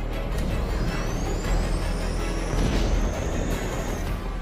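Film score with a deep rumble underneath and a thin high whine that rises steadily in pitch from about half a second in, breaking off at the end.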